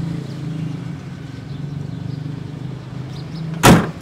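A steady low hum, with one sharp, loud knock near the end.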